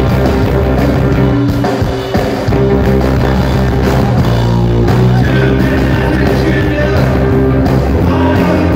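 Live psychobilly band playing through a PA, with electric guitar and electric bass. The level dips briefly about two seconds in.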